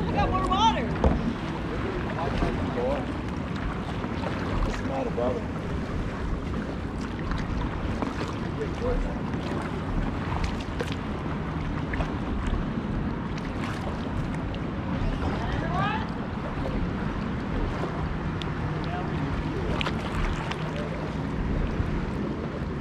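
Kayak paddling on open water: water sloshing and paddle strokes around the hull, with wind rumbling on the microphone. Faint voices come through at times.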